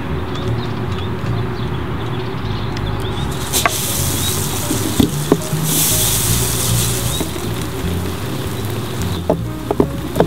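Lawn sprinklers spraying water, their hissing spray coming in about three and a half seconds in and again more strongly around six to seven seconds, over a steady background music bed.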